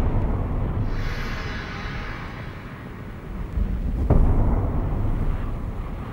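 Dubbed martial-arts fight sound effects: a steady, heavy, wind-like rumble for a palm-strike blast, with a sharp hit about four seconds in.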